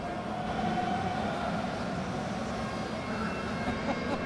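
Steady background noise of a large event hall in a pause between speakers: an even, low rumble with no clear voice in front.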